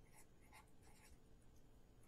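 Faint felt-tip marker strokes on paper as a few letters are written, over near silence.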